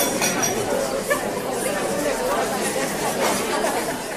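Audience chatter: many people talking at once in small groups, their overlapping conversations blending into a steady babble in a large room.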